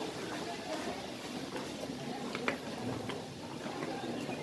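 Faint, indistinct voices of people talking, with a few light sharp taps, the clearest about two and a half seconds in.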